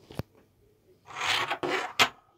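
A metal Slam Tek pog slammer scraping across a wooden tabletop as fingers grip and turn it over: a faint click, then about a second of rasping scrape in two strokes, ending in a sharp click.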